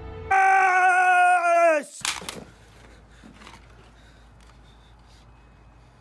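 A man's loud, held, wavering yell that drops steeply in pitch and breaks off just under two seconds in, followed at once by a sharp bang like a gunshot; then low room noise.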